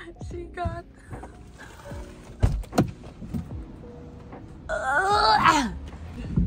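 A car door is unlatched and opened, with two quick clunks a couple of seconds in, over steady background music. Near the end a high voice rises and falls loudly.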